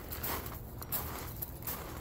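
Footsteps crunching on pea gravel: a string of short, irregular crunches over a low outdoor rumble.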